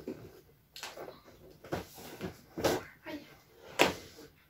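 Cardboard advent calendar being handled and a door opened: a few short rustles and knocks, the loudest near the end.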